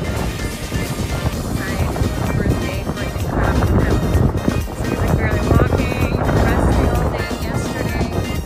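Background music with voices, over a steady low rumble of wind buffeting the microphone.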